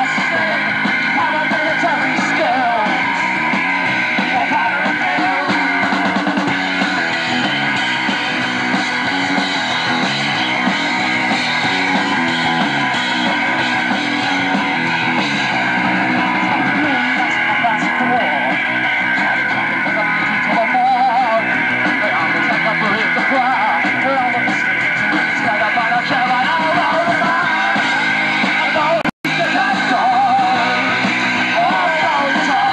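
Live rock band playing: drums with cymbals and electric guitar, with a voice singing over them. The sound drops out for an instant near the end, a tape glitch.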